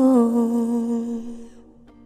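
A woman's voice holding one long final note of a pop ballad, slowly fading out until it is nearly gone near the end.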